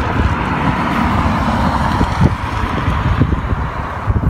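Wind buffeting the microphone in an irregular low rumble, over a steady hiss of road traffic.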